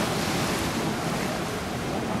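Ocean surf washing steadily onto the beach, with wind buffeting the microphone.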